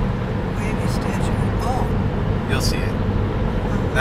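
Steady road and engine rumble inside a car cabin at highway speed, with tyres running on freshly laid pavement.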